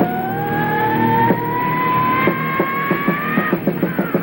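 Live hard-rock band playing, with the singer holding one long high scream that climbs slowly in pitch over the drums and guitars and breaks off shortly before the end.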